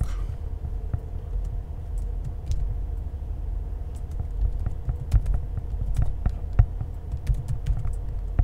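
Typing on a computer keyboard: irregular keystroke clicks in short runs with brief pauses, over a steady low hum.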